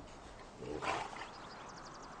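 A horse's single short, low call, about half a second long, a little before the middle.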